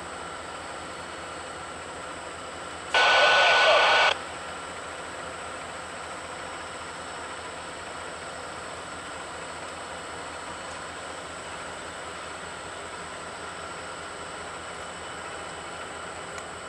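A railroad scanner radio gives a loud burst of static with a steady tone in it, lasting about a second, a few seconds in. Beneath it runs a steady low noise from the stopped train.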